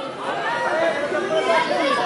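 Several voices of spectators and coaches talking and calling out over one another, a mix of crowd chatter and shouts.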